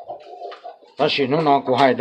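A man's voice talking, loud from about a second in, preceded by a softer, low-pitched sound in the first second.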